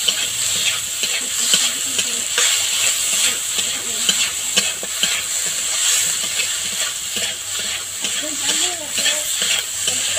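Eggplant and neem leaves sizzling in oil in a metal wok while a spatula stirs them, scraping against the pan again and again over a steady hiss.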